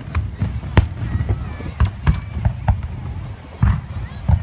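Aerial fireworks shells bursting: an irregular string of sharp bangs, about eight in four seconds, the loudest about a second in.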